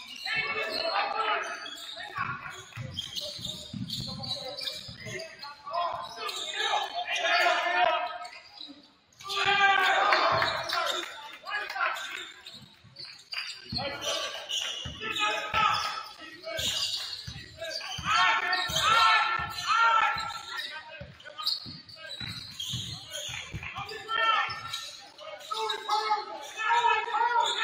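Basketball being dribbled on a hardwood gym floor, a run of short, evenly spaced bounces clearest in the second half, with shouted calls from players and coaches echoing in a large gym.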